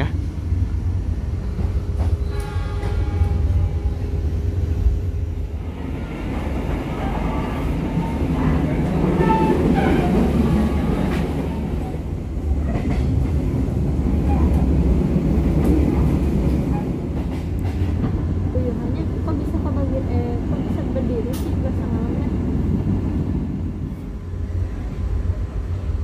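Steady low rumble and running noise of a moving passenger train, heard from inside the carriage.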